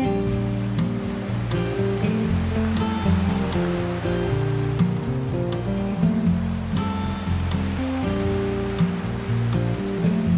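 Classical guitar music, plucked notes and occasional chords, over a steady wash of ocean waves on a beach.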